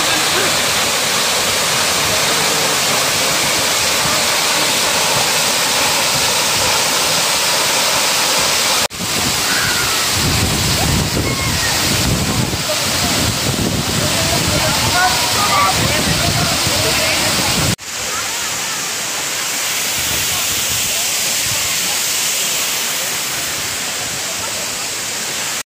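Mallela Theertham waterfall crashing into its rock pool: a loud, steady rush of falling water. In the middle stretch, voices of people bathing under the falls are heard over it, and the sound breaks off sharply twice.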